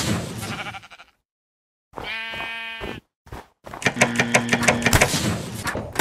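A Minecraft sheep's bleat: one wavering, pulsing 'baa' about two seconds in, lasting about a second. It is followed by a dense clattering, buzzing noise with a steady hum in it.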